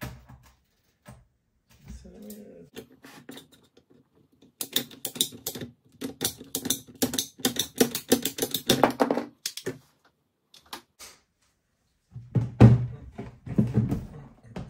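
S&R ratcheting PVC pipe cutter clicking rapidly, several clicks a second for about five seconds, as its handle is worked to cut through white PVC irrigation pipe. A few low thumps follow near the end as the pipe is handled.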